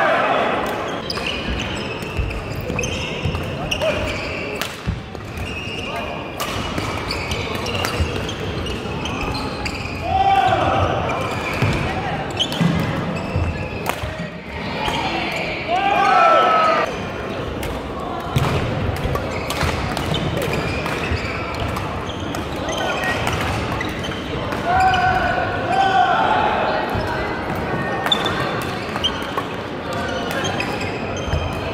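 Badminton rally on an indoor hall court: sharp racket-on-shuttlecock hits and short shoe squeaks on the wooden floor, over a constant hum of chatter echoing in the hall.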